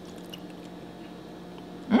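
Faint wet squishing and chewing of tender boiled octopus being pulled apart by hand and eaten, over a steady low hum.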